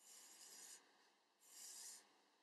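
Faint scratch of a Sharpie marker tip drawing lines on paper: two strokes, each under a second, with a short pause between.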